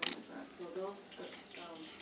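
Baseball trading cards being handled and slid past one another, with one sharp click at the start and a faint voice in the background.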